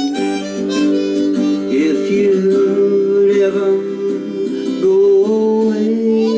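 Harmonica playing an instrumental fill of held notes, some bent in pitch, over strummed guitar accompaniment.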